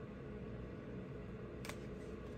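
Quiet room noise with a steady low hum and a single faint click near the end.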